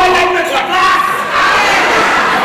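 Live theatre audience laughing and shouting, loud and continuous, with single voices rising above the crowd.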